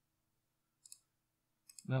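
A few quick computer mouse clicks: a pair about a second in and another couple near the end. A man's voice starts right at the end.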